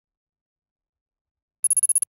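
Near silence, then near the end a short electronic ringing trill that pulses rapidly for under half a second. It is a transition sound effect that marks the change to a new word card.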